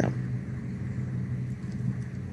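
A steady low hum with faint background hiss, unchanged throughout.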